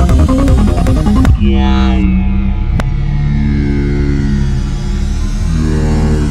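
Experimental psytrance/IDM electronic music. A busy synth-and-percussion beat stops about a second in, leaving held synth tones over a sustained bass, with a high tone slowly sliding downward and a single click partway through.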